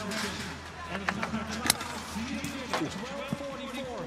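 Stadium sound during a pole vault attempt: crowd voices and a steady low hum, with a few sharp knocks about a second or two in. A man laughs near the end.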